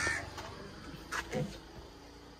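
A few short bird calls: a louder one right at the start and two brief ones a little past the middle.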